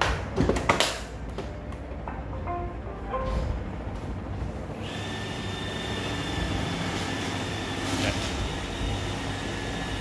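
An iRobot Roomba e5 robot vacuum is set down on a tabletop with a couple of knocks, then gives a short run of start-up tones. About five seconds in its vacuum and brush motors start with a steady whine as it begins running on the table to test its cliff (stair-drop) sensors.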